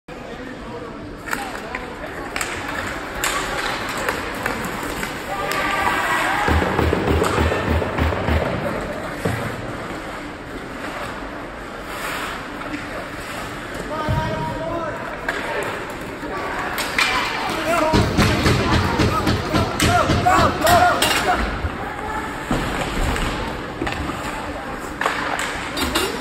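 Ice hockey game in a rink: spectators' voices and shouts over sharp clacks of sticks and puck and knocks against the boards. Two stretches, about a quarter of the way in and again about two-thirds in, carry a fast, regular low thumping.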